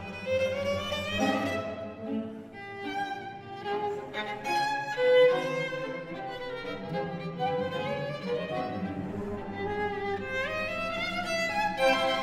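Chamber string ensemble of violins and cellos playing classical music, with bowed notes sliding upward about a second in and again near the end.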